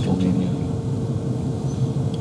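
Steady low rumble and hum with a faint constant tone, with no sudden events.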